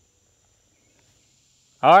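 Near silence with a faint, steady high-pitched insect drone, then a man starts speaking near the end.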